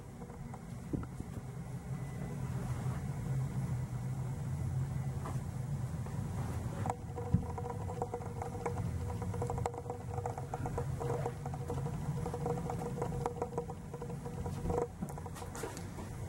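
Natural gas boiler running: a steady low hum, joined about halfway through, just after a click, by a higher steady tone that fades out near the end.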